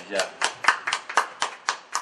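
Small audience applauding in welcome, sharp claps landing about four a second and stopping just after the end.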